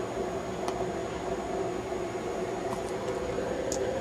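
Steady background hum and hiss, with a few faint, short clicks from the late 2008 aluminum MacBook's glass trackpad as About This Mac is opened.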